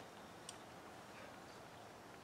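Near silence: faint steady hiss of the open air, with a single faint sharp click about half a second in.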